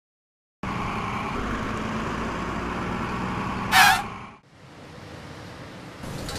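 Steady road-traffic noise with a low rumble, broken near the middle by a short, loud, high-pitched wavering squeal; then a sudden drop to quieter outdoor ambience.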